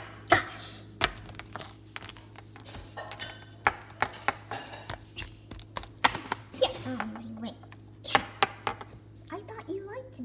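Scattered, irregular taps and knocks of toys and hands on a hard stone countertop, with a short hummed note from a child about seven seconds in.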